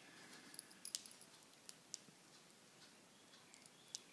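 Near silence with a few faint, light clicks of small metal parts as a roof-prism binocular and a small screwdriver are handled during disassembly.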